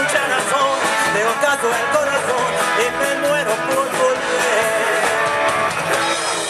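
Live rock band playing loud through a PA: electric guitars and a drum kit, with singing over them.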